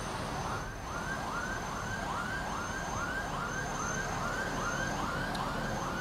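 A siren sounding in a fast repeating rising sweep, about three sweeps a second, over a steady background of highway traffic.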